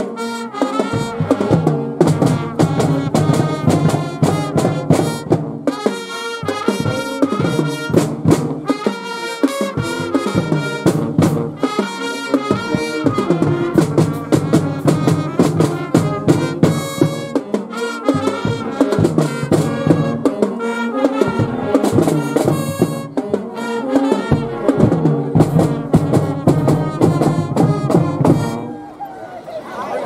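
High school marching band playing a brass tune in the stands, with horns and saxophones over a steady drum beat. The music stops near the end.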